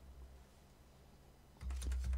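Computer keyboard: a quiet stretch, then a short run of quick keystrokes near the end as a code is typed into trading software.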